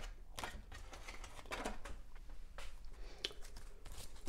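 A deck of astrology oracle cards being shuffled by hand: quiet, irregular card clicks.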